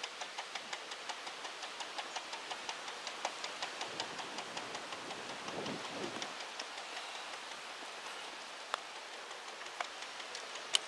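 Rapid, even ticking, about six ticks a second, over a steady hiss, thinning out about seven seconds in. Near the end, a single sharp click: a putter striking a golf ball.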